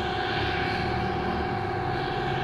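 Steady mechanical drone with a faint constant tone running under it.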